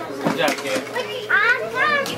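Children's voices and chatter, with a high-pitched child's voice rising and falling in the second half.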